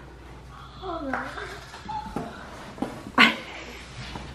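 Cardboard box being handled and its flaps pulled open, with a brief sharp rustle about three seconds in, under soft, quiet voice sounds.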